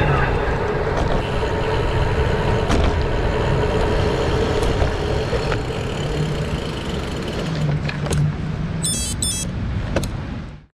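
Wind and road noise from a bicycle rolling across asphalt, picked up by a camera mounted on the bike or rider, with a few sharp clicks. Near the end come two quick runs of high electronic beeps.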